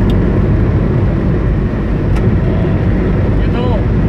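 Car cabin noise at highway speed: a loud, steady low rumble of tyres on the concrete road surface and the running car.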